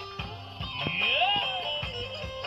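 Live Turkish folk dance music played on a long-necked plucked lute (bağlama) and an electronic keyboard over a steady programmed beat. About halfway through, the lead melody slides upward in pitch.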